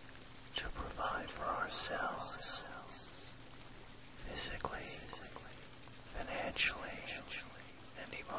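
Whispered voice-over in three short phrases over a steady bed of recorded rain, with a faint low isochronic tone underneath.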